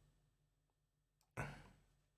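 Near silence, broken about halfway through by one short breathy exhale from a man close to the microphone that fades out within half a second.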